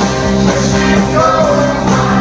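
Live rock band playing loudly, with electric guitars, bass and drums, and a male lead singer singing over them.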